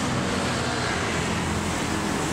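Steady background vehicle noise, a low hum under an even hiss, with no distinct events.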